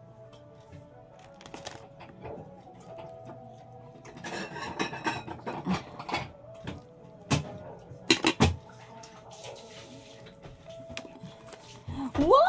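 Light tapping and clinking of a spoon and plates while burgers are assembled, with a few sharper knocks about seven and eight seconds in. Faint background music runs underneath.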